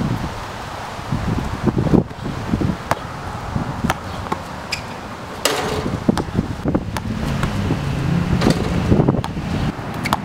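Basketball bouncing on an outdoor court, a scattering of sharp thuds at irregular intervals, over steady wind noise on the microphone.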